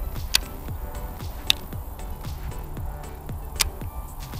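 Background music over low wind rumble on the microphone, with three sharp clicks a second or two apart as a Shimano Scorpion 70 baitcasting reel's controls are handled.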